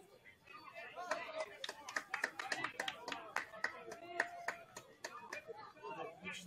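Hand clapping, quick claps at about four or five a second, starting about a second in and running for some four seconds, with voices nearby.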